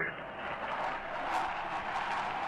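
A steady rushing noise with no speech, heard through the narrow band of an old radio recording.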